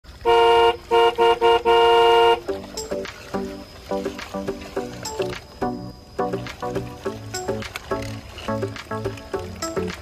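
A horn tooting: one long blast, three short toots and another long blast, then lively background music with a steady beat.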